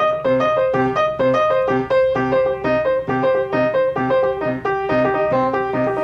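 Piano playing a continuous arpeggio, a repeating broken-chord figure climbing through the chord's inversions in a steady, even stream of notes.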